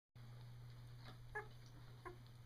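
Newborn Llewellin setter puppies squeaking: two short, faint, high squeaks about a second in, over a steady low hum.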